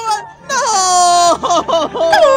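A very high-pitched, cartoon-like voice wailing without words: a long cry that slides down in pitch, breaking into quick wobbling sobs in the second half.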